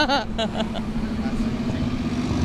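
A steady low mechanical hum with street noise under it, like a running motor or idling vehicle, after a short burst of laughing speech at the start.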